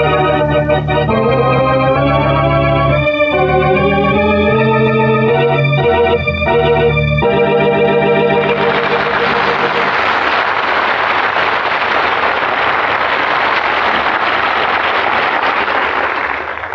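Old-time radio drama organ music: sustained chords that change every second or so, ending about eight seconds in. A loud steady rushing noise then takes over until the end.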